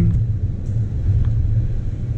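Steady low rumble of a car heard from inside the cabin while it moves slowly.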